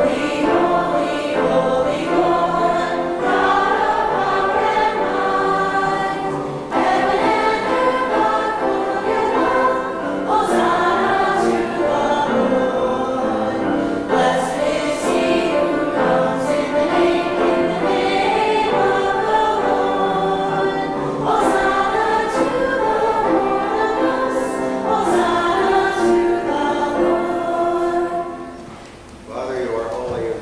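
A choir of young voices singing a hymn together, phrase after phrase with brief breaks between lines.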